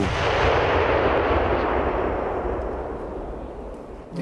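A 2S19 Msta-S 152 mm self-propelled howitzer firing a single shot: a sudden loud boom whose rumble rolls on and fades away over several seconds.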